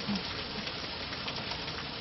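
Steady, even hiss of room tone and recording noise in a lecture hall, with no other distinct sound.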